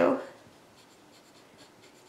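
Pen writing on paper: a faint run of short scratching strokes.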